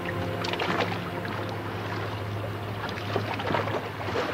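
Choppy sea water sloshing and splashing against a boat's stern dive platform, with a few sharper splashes about half a second in and again near the end, over a steady low hum.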